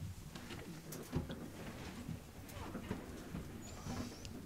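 People settling back into their seats: chairs shifting and creaking, rustling and a few light knocks, with a low thump about a second in.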